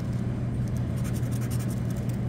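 A scratch-off lottery ticket being scratched: light, dry scraping strokes over the card's coating. Under the strokes runs a steady low hum, which is the louder sound.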